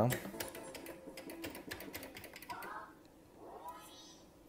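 Quick run of clicks from a Merkur slot machine for about the first three seconds as its game is switched, followed by two brief faint tones.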